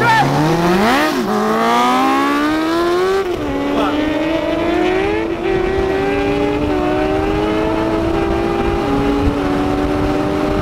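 Vehicle engines accelerating hard through the gears, the pitch climbing and dropping back at each upshift, about every two to three seconds, with a sport motorcycle passing close in the first second.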